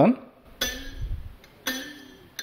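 A short steel coil spring, flicked free from under a fingertip, gives a sharp metallic twang about half a second in that rings briefly, with a second twang near the end. Its higher pitch noise comes from the short spring's high natural frequency of vibration.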